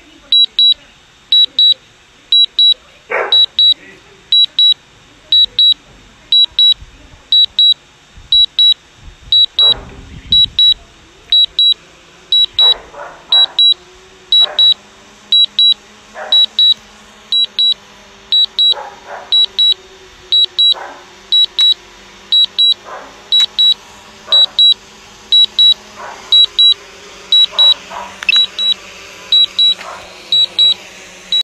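High electronic beeping from a DJI Mavic 2 drone's remote controller during landing: two short beeps about once a second, steady throughout. Scattered short clicks sound between the beeps.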